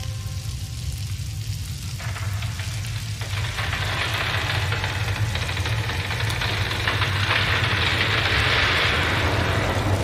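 A steady, low droning rumble with a hiss that swells up from about three seconds in and grows louder toward the end: a dark atmospheric build-up before the band comes in.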